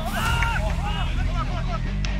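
Raised voices calling out on a soccer pitch during play, over a steady low rumble of wind on the microphone.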